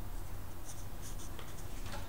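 Red Sharpie felt-tip marker writing on paper: a few short scratchy strokes of the tip as letters are drawn, over a steady low hum.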